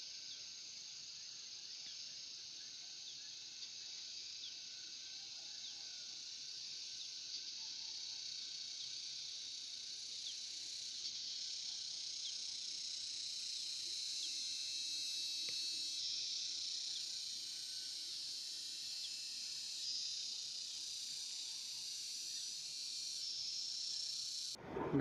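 A steady, high-pitched chorus of insects, swelling slightly toward the middle, with faint short chirps over it.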